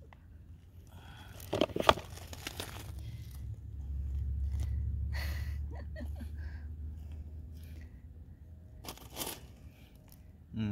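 Hands working a flexible plastic seed-starting tray, which crinkles and crackles as a cabbage seedling is pulled from its cell, with a sharp click about two seconds in. Then the seedling's root ball and the wood-chip mulch rustle as it is set into the planting hole.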